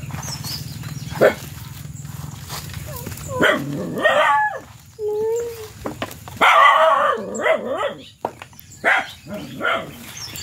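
Domestic animal calls: several loud cries, the longest and loudest about six and a half seconds in, over a steady low hum that stops at the same moment.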